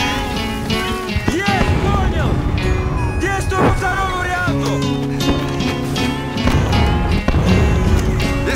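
Instrumental music with long held chords, with short cries or shouted voices mixed in over it.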